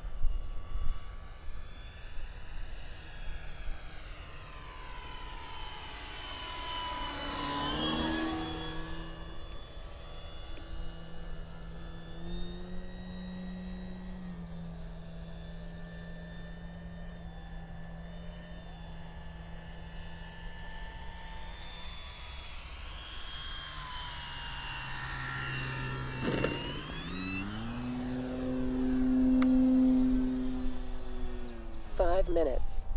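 Electric RC plane, an Avios Grand Tundra on a 6S battery with a 15x8 inch wooden propeller: the motor and propeller whine steadily in flight. The pitch drops as it passes close by, about eight seconds in and again a little before the end. Just before the end the pitch rises as the throttle is opened.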